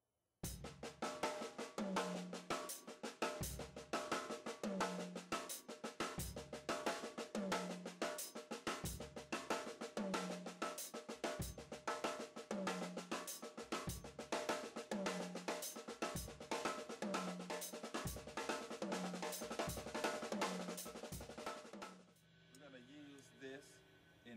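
Drum kit playing an inverted paradiddle groove: rapid sticking across hi-hat and snare, with a low drum hit about every second and a quarter. It stops about two seconds before the end.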